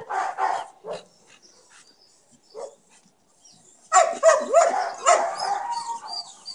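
Dogs barking and yipping at each other through a kennel fence: a few short barks at the start, a lull, then a quick run of excited yips and whines from about four seconds in.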